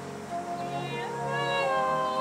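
Brass band playing, thinned to a single high brass line that plays a short phrase and then slides up about a second in into a held note.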